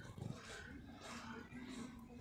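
Long-haired tabby cat licking its fur: faint, soft licking sounds, with a faint low hum underneath.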